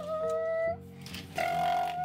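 Two short honks, each holding one steady pitch, one near the start and one near the end, like a toy car's horn announcing its arrival. Quiet background music with a steady bass line plays under them.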